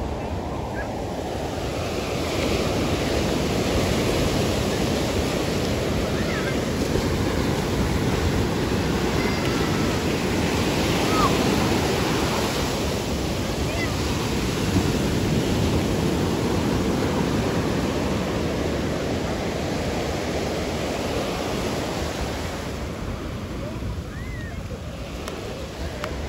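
Ocean surf breaking and washing up a sandy beach: a continuous rushing wash that swells louder a couple of seconds in and eases off toward the end.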